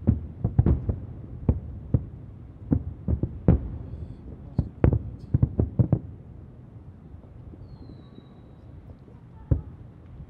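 Distant aerial fireworks shells bursting as a string of dull low booms, coming thick and fast for about the first six seconds, then thinning out, with one more boom near the end.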